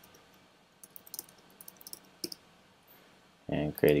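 Computer keyboard keys and mouse clicks: a scattered handful of light, irregular clicks over about a second and a half, as text is typed into a web form and a button is clicked.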